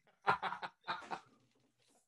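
Men laughing: two short bursts of laughter in the first second or so, then it dies away.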